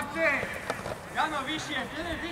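Unclear shouts and calls from several voices during a youth football match on an outdoor pitch, one falling call near the start and more calls about a second in.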